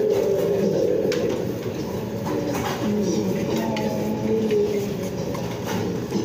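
Spoons and forks clicking against plates several times, over a steady low background din.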